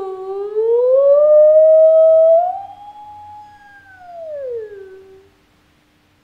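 A woman's voice holding one long, wordless 'ooh': it dips, slides up and holds, then falls away and fades out about five seconds in.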